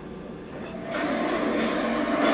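A cinema audio recording playing through laptop speakers, fading in about half a second in and rising to a steady noisy wash of the theatre's sound.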